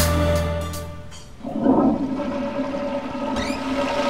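Guitar music fades out. About a second and a half in, a rush of running water starts and settles into a steady watery hiss.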